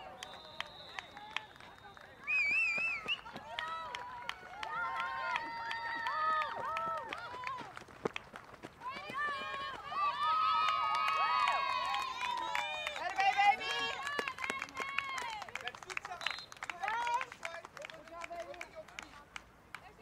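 Several high-pitched voices of softball players and spectators shouting and cheering over one another, loudest in the middle, as runners come round to score.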